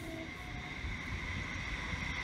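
A train passing at a distance: a low rumble under a steady high-pitched tone.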